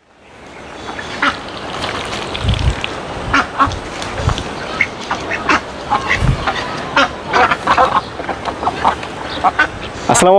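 Domestic ducks quacking repeatedly in short, irregular calls, the sound fading in over the first second.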